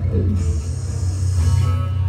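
Amplified acoustic guitar playing a steady low chord riff through the PA, live, with no singing; a higher ringing note comes in near the end.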